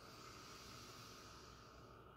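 Near silence: faint room tone with a low, even hiss.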